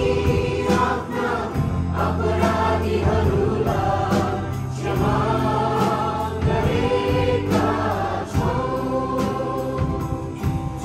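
A congregation singing a Christian worship song together, with instrumental backing that holds long low notes under the voices.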